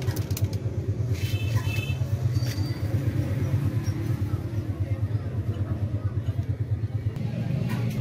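A steady low rumble with a rapid, even throb, like a small engine idling. A few faint higher tones come about a second in.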